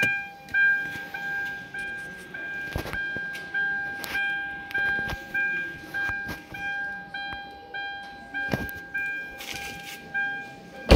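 Hyundai i20's interior warning chime dinging over and over at the same pitch, about every 0.6 s, over a steady tone. A few sharp knocks of handling come in between, about three, five and eight and a half seconds in.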